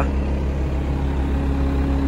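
Caterpillar 236D skid steer loader's diesel engine running steadily with a low, even hum.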